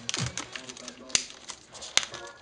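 Plastic shrink-wrap being torn and peeled off a vinyl record sleeve, crackling, with two sharp snaps, one about a second in and one at the end. A techno kick drum plays in the background and falls away just after the start.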